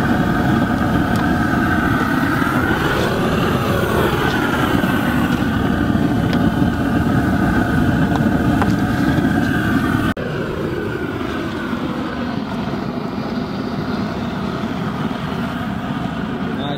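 A pressure washer's engine running steadily, its pitch dipping and recovering a couple of times. The sound drops a little in level at an abrupt cut about ten seconds in.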